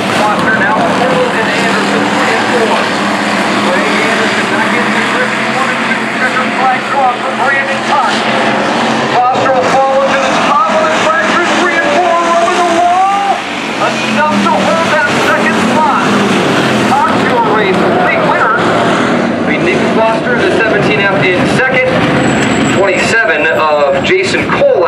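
Dirt-track hobby stock race cars running on the final lap, their engines a steady drone, under the talk and calls of spectators close by; the engine sound fades away about halfway through.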